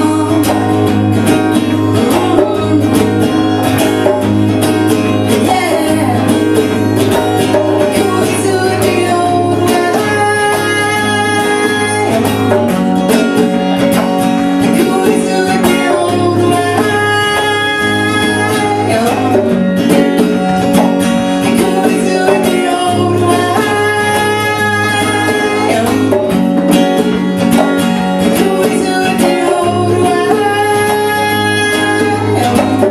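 Live acoustic song: a woman singing over a strummed acoustic guitar, with a pair of congas played by hand for percussion.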